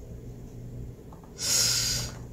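A man's quick breath in, about half a second long near the end, taken just before he speaks again, over a steady low hum.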